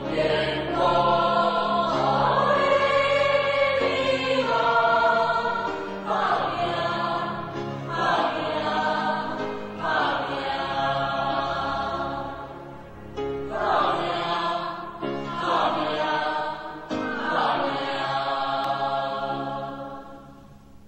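Music: a choir singing a song with instrumental accompaniment, in phrases of held notes a few seconds long.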